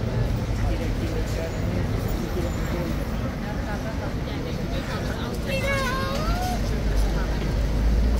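Busy street ambience: tourists chattering, with a low road-traffic rumble that builds toward the end. One voice rises and falls briefly about five and a half seconds in.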